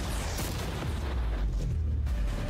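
Cannon fire: a deep, continuous rumble with noise across the whole range, heaviest in the low end, at an even level without a single sharp crack.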